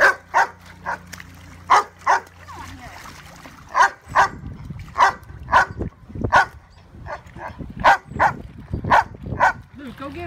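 Yellow Labrador retriever barking over and over in short, sharp barks, about two a second, with a brief pause around the two-second mark.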